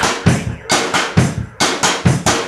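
Music: a drum break in the song, the drum kit's bass drum and snare hitting in a steady rhythm with little else playing, between sung lines.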